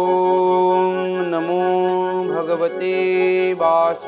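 Male voice chanting a Hindu devotional mantra in long held notes, with a brief wavering turn about halfway through, over devotional background music.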